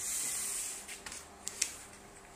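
A sheet of printer paper rustling and swishing as it is handled and laid down on cardboard, loudest in the first half-second, followed by a few light taps.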